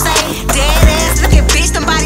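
Skateboard wheels rolling and rattling over granite block paving, mixed with a hip-hop track with a steady beat.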